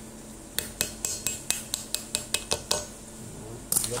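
A run of light metallic clicks, about five a second, as a ball bearing is worked by hand into the angle grinder's metal gear housing, followed near the end by a louder clatter of metal on metal.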